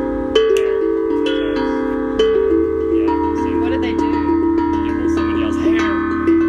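Steel tongue drum played in a free, improvised melody: struck notes ring on and overlap as the tune steps between pitches. Firmer strokes come about half a second and about two seconds in.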